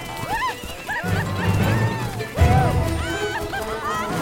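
Film soundtrack music under a string of short, high, swooping cries, with a loud low thump about two and a half seconds in.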